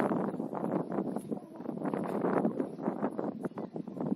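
Wind buffeting an outdoor camera microphone, an uneven rumbling noise that swells and dips in gusts.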